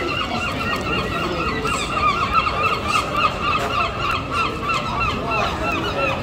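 Gulls calling without a break: a long run of short, repeated calls, several a second.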